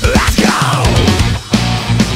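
Progressive death metal with distorted guitars, drums and a fretless bass. A falling pitch sweep runs through the first second, the music drops out briefly at about a second and a half, then comes back in with low, steady bass notes.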